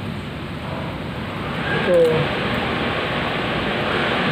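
A steady rushing noise that grows louder about one and a half seconds in, with a short spoken word near two seconds.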